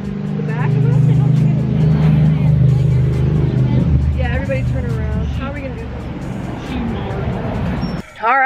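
Background music with a steady low bass line, with short bits of voices over it.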